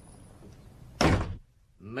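A door is shut with a single loud bang about halfway through, a radio-drama sound effect. The faint street background is cut off and near silence follows.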